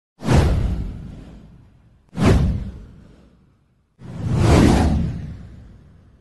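Three whoosh sound effects with a deep low end, about two seconds apart. The first two hit suddenly and fade over about a second and a half. The third swells in more slowly and fades out near the end.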